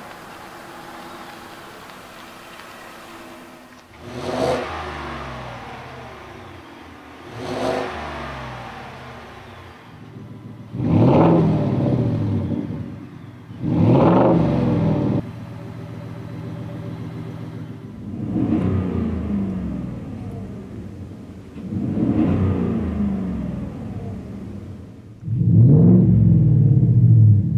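2021 Ford F-150's 5.0L V8 running through a Flowmaster Outlaw cat-back exhaust with a Super 10 muffler. It runs low at first, then the exhaust note climbs sharply and falls back about seven times. The two loudest revs come about three seconds apart midway.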